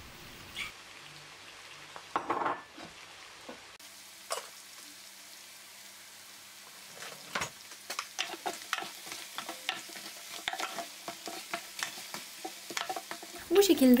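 Beef bones and vegetables sizzling as they brown in a roasting pan for a demi-glace. From about halfway through, a wooden spoon stirs them with a run of quick clicks and scrapes against the pan.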